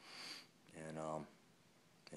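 A man sniffs sharply through his nose, then makes a short wordless vocal sound that falls in pitch, about a second in.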